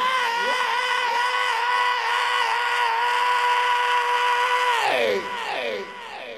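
Male rock singer's voice holding one long high wailed note, sliding up into it and, after about five seconds, breaking off in a series of falling slides.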